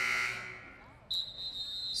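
A gym scoreboard buzzer sounds, cutting off just after the start and dying away in the hall. About a second in, a referee's whistle is blown once as a steady high note lasting about a second.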